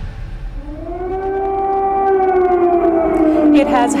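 Air-raid siren winding up from about half a second in, then holding a steady wail that sags slightly in pitch near the end, when a newscaster's voice comes in.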